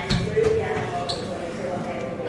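Indistinct chatter of many people talking in a large indoor space, with a couple of dull thumps about half a second in.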